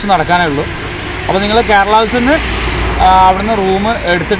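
A man talking, with the low rumble of road traffic behind him that swells briefly near the end, like a vehicle passing.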